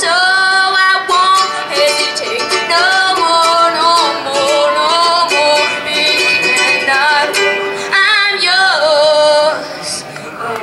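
A young singer singing into a microphone while strumming a ukulele, holding long notes that waver in pitch.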